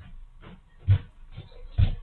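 A series of muffled thuds over a steady hiss, heard through a security camera's low-quality audio, the two loudest about a second apart.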